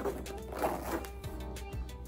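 Zipper of a small cosmetic pouch being drawn shut in a couple of quick rasping pulls, over background music.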